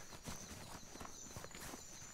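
Faint background ambience: a steady high thin tone with scattered soft clicks and knocks.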